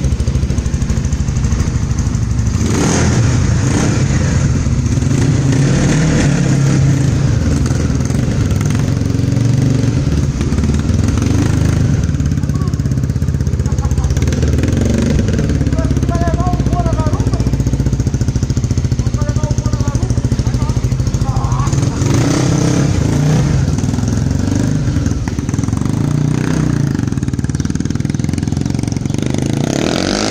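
Honda Twister's single-cylinder four-stroke engine, bored out to 288 cc with a 3 mm oversize piston, high compression for ethanol and a high-overlap cam, running through an aftermarket 969 exhaust. It runs loud and steady, with small changes in revs.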